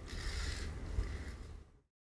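Stage and hall room noise with shuffling footsteps and clothing rustle from performers walking off a stage, and a single sharp knock about a second in; the sound cuts off to silence near the end.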